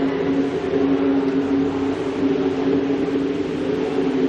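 A synthesizer pad chord of a few low notes, held steady: the opening of a backing track.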